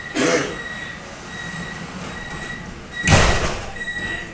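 Door-closing warning on a Vienna U-Bahn Type V metro car: a high beep repeating about once a second, then the doors slide shut with a loud thump about three seconds in. A brief cough-like sound comes right at the start.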